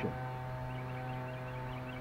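A steady low hum at one pitch with several even overtones, unchanging throughout.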